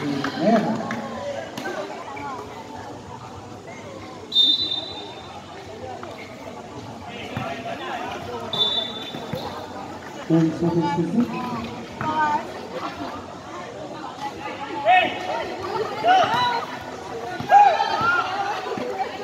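Players and spectators calling out during a basketball game, with two short, steady referee-whistle blasts, one about four seconds in and one about eight and a half seconds in.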